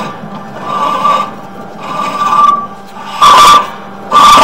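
A sewer inspection camera's push cable scraping against the pipe as it is pulled up out of the vent stack in three surges, about a second apart, the last the loudest.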